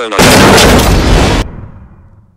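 Cartoon crash sound effect of a sledgehammer smashing a smartphone: a sudden, very loud, explosion-like burst of noise lasting over a second, then dying away.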